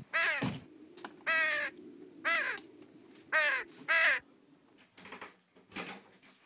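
A crow cawing five times, each caw short and about a second apart, the last two closer together. Two soft knocks follow near the end.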